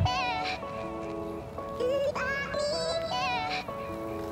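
Background music: an electronic track with a gliding, vocal-like lead melody over held chords.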